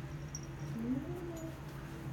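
A Persian cat's faint mew: one short call about a second in that rises and then levels off.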